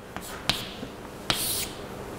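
Chalk on a blackboard: a few sharp taps and a short scraping stroke about a second and a half in, as an equals sign and a tall bracket are chalked.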